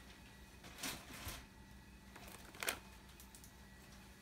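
Quiet room with a few faint, brief knocks and rustles of bottles and packing being handled in a cardboard box, the loudest about two and a half seconds in.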